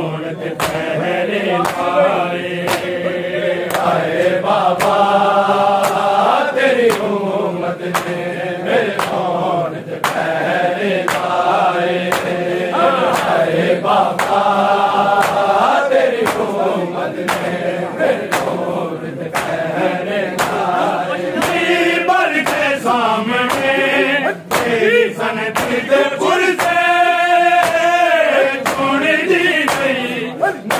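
Male voices chanting a noha, a Shia mourning lament, in chorus, over a steady beat of sharp hand-slaps on bare chests (matam) at about one and a half a second.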